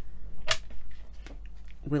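A single sharp click about half a second in, from a stone-beaded wrap bracelet on waxed cotton cord being handled and set down on the work mat.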